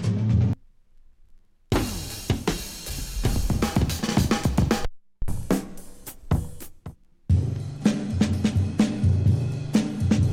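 Drum breaks played from a vinyl breaks record on a turntable: kick, snare, hi-hats and cymbals in loops. Several short breaks follow one another, each ending abruptly with a brief pause before the next, the longest pause about a second in.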